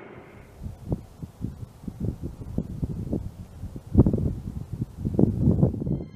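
Wind buffeting the microphone in irregular low rumbling gusts, the strongest about four seconds in.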